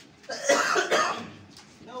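A person coughing, a few harsh bursts in quick succession, then a man's voice starts speaking near the end.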